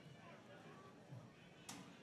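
Near silence between pitches: a faint murmur of distant voices, with one short sharp click near the end.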